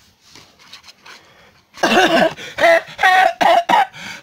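Faint rustle of cards being handled, then from about two seconds in a run of short, high-pitched bursts of laughter.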